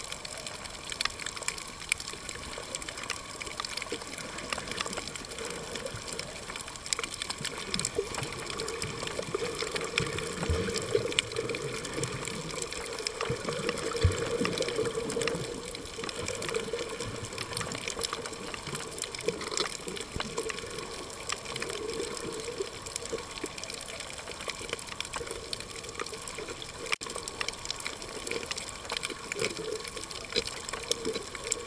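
Underwater sound picked up by a camera on a coral reef: a steady wash of water with many faint scattered clicks, and a fuller murmur of water about a third of the way through.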